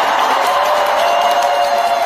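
Live concert music heard from the arena stands over a cheering crowd, with one long held note that steps up in pitch about a second in.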